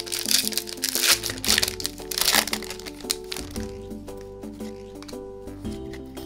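Foil booster-pack wrapper crinkling and being torn open by hand for the first three seconds or so, then stopping, over background music with a steady stepped melody.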